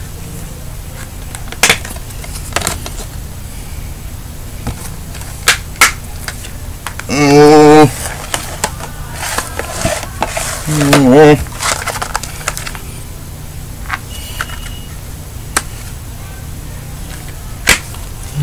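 Scattered clicks and knocks of plastic DVD cases being handled, with two short wordless vocal sounds from a person a little past the middle, the loudest things here.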